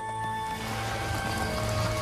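Background music score with long held notes, over a steady rushing noise that slowly grows louder.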